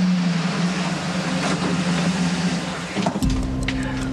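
A car engine running steadily as a car pulls up and stops. About three seconds in, the sound changes to a deeper rumble, with a few sharp clicks.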